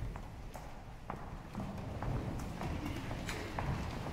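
Footsteps and shuffling on a chapel floor, with scattered knocks and clicks as people move and stand.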